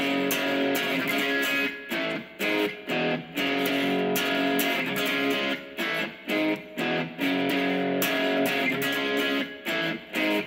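Electric guitar playing power chords fast in a steady rhythm, each chord held and then cut off briefly before the next.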